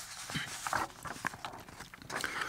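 Paper script sheets handled close to a microphone: a few light taps and short rustles.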